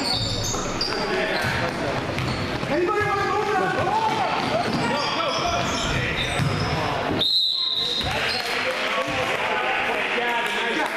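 Basketball dribbling on a hardwood gym floor with short sneaker squeaks, and spectators shouting and cheering in the echoing gym. About seven seconds in, a short steady referee's whistle blast sounds.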